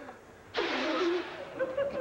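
Audience laughter breaking out suddenly about half a second in and trailing off.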